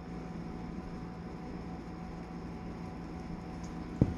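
Steady low hum with an even hiss: room background noise, with nothing else standing out.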